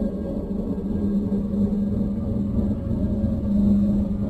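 A dark ambient drone: a steady low hum with a deep rumble beneath it, slowly swelling in level.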